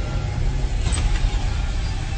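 A car driving: a steady low rumble, with a short sharper noise about a second in.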